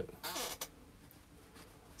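A spoken word ends, followed by a brief faint sound and then near silence: room tone.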